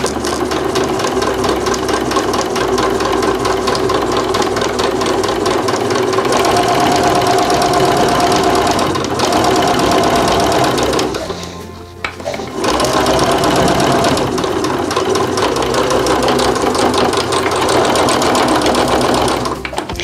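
Domestic sewing machine stitching a seam through denim at a fast, even pace. It stops briefly about halfway through, then runs again until just before the end.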